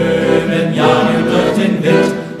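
Background music of a choir singing, with held notes.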